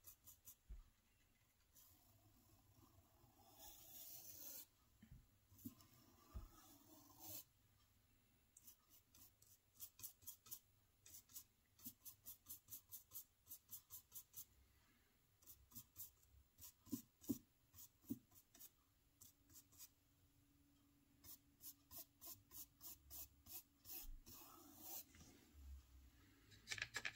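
Faint, scratchy strokes of a small paintbrush on the brick-textured plastic wall of a model building, streaking oil paint thinned with Turpenoid. They come in runs of quick, even strokes, about three a second, with a few longer rubs near the start.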